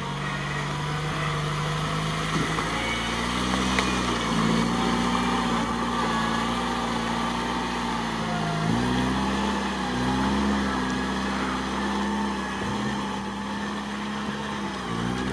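Lada Niva's engine running under load as it crawls through deep mud and water, the engine note rising and falling with the throttle, with a brief dip about nine seconds in.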